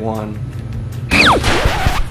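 A small basketball shot at an arcade basketball hoop machine, missing: about a second in, a sudden loud rush of noise with a quick falling whistle over its start.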